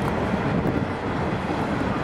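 Steady outdoor background noise, a low rumble with an even hiss and no distinct event.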